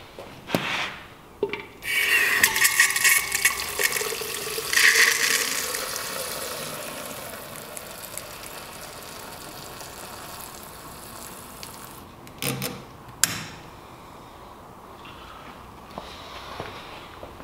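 Stout running from a fermenter's stainless sample tap into a jug, a loud splashing gush starting about two seconds in that settles into a steadier, fading stream as the jug fills with foam. A few knocks at the start and two more near the end.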